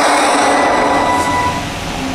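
Movie trailer soundtrack: a dense, steady noisy drone with a few held tones, easing off in the second half.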